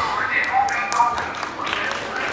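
The dance music cuts off at the start; what follows is scattered voices and light taps and clicks on a wooden floor.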